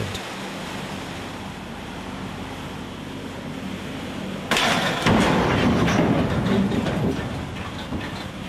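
Steady rumble of a ship under way, then about four and a half seconds in a sudden loud crash as its steel ramming bow strikes a Y-shaped double-hull test section, the grinding impact lasting a couple of seconds before easing.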